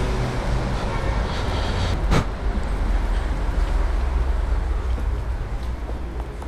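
Steady low rumble of city street noise, with a single sharp click about two seconds in.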